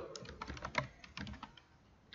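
Computer keyboard typing: a quick run of keystrokes through the first second or so, tailing off near the end.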